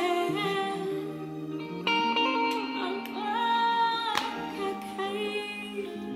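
Gospel song playing: a sung vocal melody over sustained instrumental backing, with a sharp percussive hit about four seconds in.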